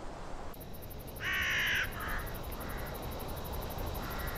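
A crow cawing: one call lasting under a second, about a second in, then two fainter, shorter calls, over a steady low background hiss.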